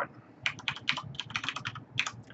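Computer keyboard typing: a quick, uneven run of key presses starting about half a second in.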